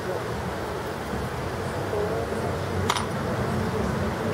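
Steady room hum with faint voices in the background, and a single sharp clink of a small hard object about three seconds in.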